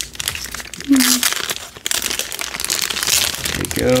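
Foil wrapper of a Panini football card pack crinkling as it is peeled open at its crimped end, a dense run of crackles that grows busier after about a second.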